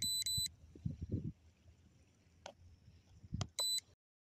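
Drone remote controller giving short, high electronic beeps: a quick run of beeps at the start and another short run near the end, with soft handling knocks and clicks in between.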